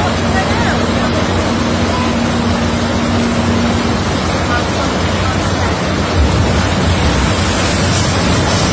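Steady rush of water running down a log flume ride's channels into its splash pool, with a steady low hum during the first few seconds.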